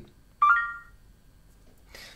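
A smartphone voice assistant's activation chime: one short electronic tone of a few notes stepping upward, about half a second in.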